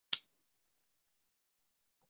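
A single short, sharp click just after the start, then silence.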